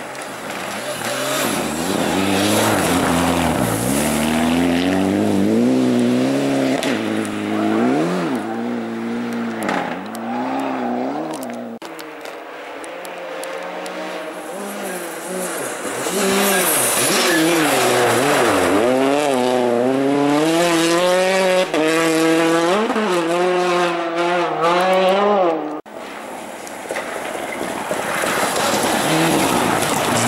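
Rally car engines on a snowy gravel stage, revving hard as the cars approach and pass, with repeated climbs and drops in pitch from gear changes and throttle lifts. The sound breaks off abruptly twice as one car's run gives way to the next.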